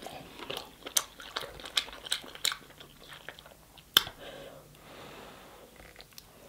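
Close-miked chewing of sauce-soaked king crab meat: wet mouth smacks and clicks, scattered irregularly, the sharpest about four seconds in.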